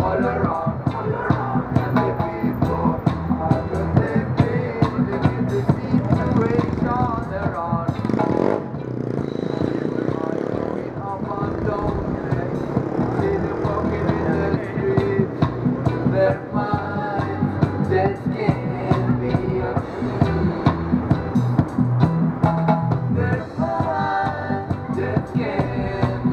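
Live reggae band playing an instrumental passage: keyboard over drums struck with sticks on a homemade kit, in a steady rhythm. A swooping sound effect glides through the mix about eight seconds in.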